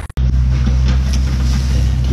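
A brief dropout in the sound at a cut, then a steady low rumble.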